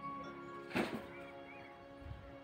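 Soft instrumental background music with long held flute notes, and one brief noisy burst a little under a second in.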